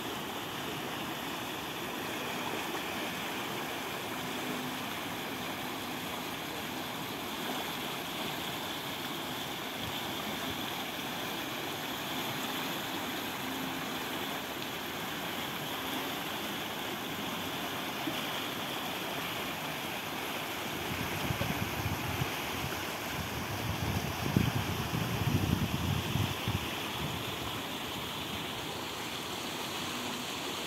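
Muddy floodwater rushing steadily down a storm-swollen drainage channel, a continuous even churning of turbulent water. From about two-thirds of the way in, irregular gusts of low buffeting on the microphone break in for several seconds and are the loudest part.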